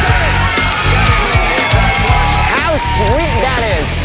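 Hard rock music with distorted electric guitar and a steady drum beat, with excited voices yelling over it in the second half.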